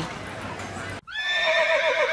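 A horse whinnying: one long, quavering neigh that starts suddenly about halfway through, after a second of low background hubbub.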